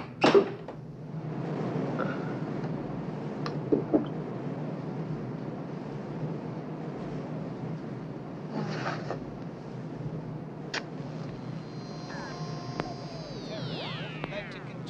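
A ship's cabin porthole clanks loudly as it is swung open, over a steady background rumble, followed by a few lighter knocks. Near the end, a radio is tuned across the dial with several whistling tones that slide downward in pitch.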